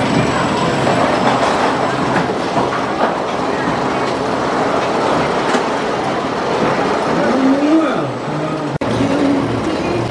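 A loaded roller coaster train on a wooden coaster's track rolling out of the station close by, a steady dense mechanical noise. A voice calls out about seven to eight seconds in, and the sound drops out sharply for an instant just before nine seconds.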